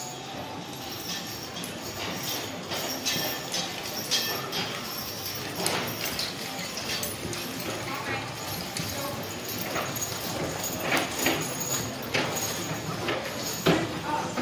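Hooves of walking draft-horse teams clip-clopping on a sand arena floor, an irregular run of soft knocks. They grow louder near the end as a team and its wagon pass close by.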